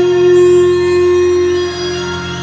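Live experimental electric guitar music: one long sustained note held steady over a layered drone, with faint high rising and falling glides; the note fades away a little before the end.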